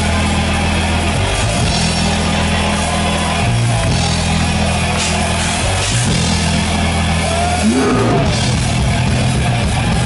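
Thrash/groove metal band playing live: electric guitars, bass and drums in a loud, dense riff, with low held notes that change every second or two and a short sliding note near the end.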